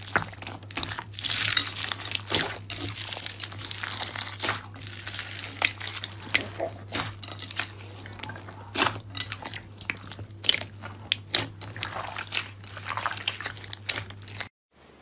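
Blue slime full of foam beads being squeezed and kneaded by hand, with dense, irregular crackling and popping and sharp clicks as the air pockets and beads burst.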